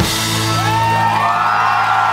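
A live pop-rock band ends a song on one final hit, the chord held and ringing with a steady low bass note, while rising whoops sound over it.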